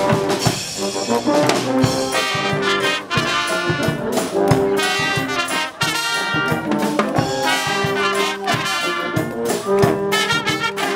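Dweilorkest (Dutch street brass band) playing live: trombones lead over a sousaphone bass line and a drum kit keeping a steady beat.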